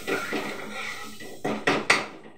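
A spatula scraping and knocking against a metal wok on a gas stove, ending in three sharp metallic clanks, the last the loudest.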